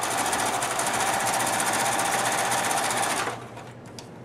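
White electronic sewing machine running steadily at speed with a rapid, even stitching rhythm as it sews a zigzag stitch along the edges of patchwork pairs. It stops a little after three seconds in.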